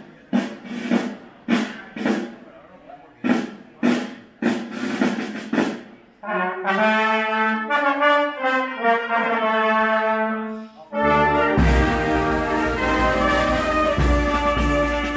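Marching brass band playing in the street, led by trombones and trumpets: short detached chords about twice a second, then long held notes, and near the end the full band with drums comes in louder.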